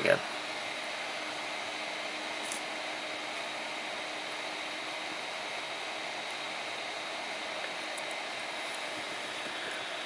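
Steady background hiss of room noise, like a running fan, with a faint low hum that fades out about halfway through.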